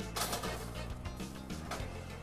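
Background music, with a short scraping noise near the start as a ceramic baking dish slides onto a metal oven rack.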